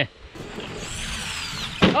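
Arrma Fury RC truck's brushed electric motor whining at full throttle on a 3S lipo, the high whine falling in pitch. A sharp knock comes near the end.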